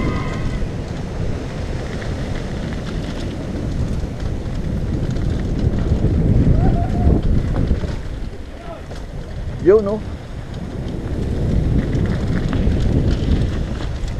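Wind buffeting a helmet-mounted camera's microphone over the rumble of mountain bike tyres on a dirt trail during a fast downhill run. A couple of short voice-like calls come about halfway through.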